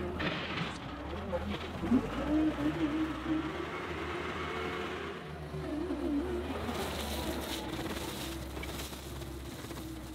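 John Deere 325G compact track loader's diesel engine running steadily as the machine drives across gravel with its bucket raised.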